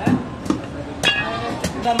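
A large butcher's knife chopping goat meat against a wooden log chopping block: about five sharp chops roughly half a second apart, one followed by a brief metallic ring.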